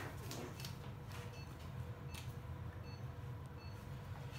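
Quiet room hum with a patient monitor's short, faint electronic beep sounding twice, and soft clicks and rustles of nitrile gloves being pulled on.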